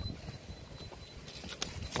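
A few faint, scattered knocks and taps over a low background rumble, from handling around a landing net with a freshly caught fish on a concrete quay.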